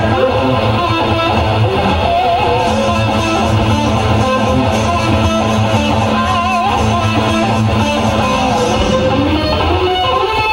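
Live hair-metal recording playing: electric guitar lead with wavering, bent notes over a steady bass line.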